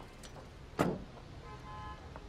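A Mazda 3's car door shut with a single thud about a second in. A faint steady tone follows near the end.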